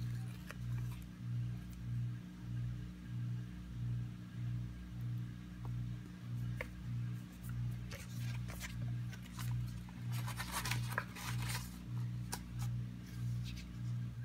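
Washing machine running in the background, a low hum that swells and fades about one and a half times a second. About eight to twelve seconds in, paper and sticker-sheet rustling over it.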